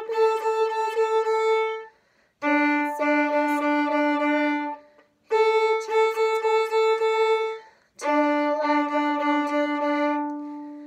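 Violin bowed in the 'down, wiggle, wiggle up' rhythm: four phrases of short repeated notes, each about two seconds long with brief gaps between them, going A, then D, then A, then D again.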